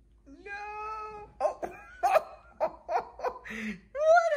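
A person laughing in short repeated bursts, after a steady high voice-like note held for about a second near the start.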